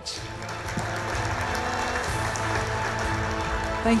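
Audience applauding at the end of a talk, with music playing over the clapping.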